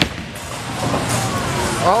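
Bowling-alley din as a bowling ball rolls down a lane, with a sharp click right at the start.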